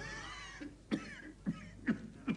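A person coughing: three short coughs in the second half, after a faint wheezy sound at the start.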